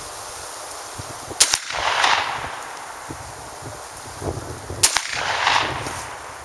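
Two shots from a Savage 745 12-gauge semi-automatic shotgun firing one-ounce Fiocchi Exacta Aero slugs, about three and a half seconds apart. Each sharp report is followed by an echo that rolls on for about a second.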